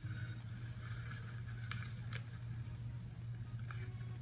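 Quiet, steady low hum with a few faint clicks, and no speech or music.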